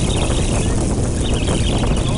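Wind buffeting the microphone, with a steady low rumble and a high hiss of wind and sea on an open boat.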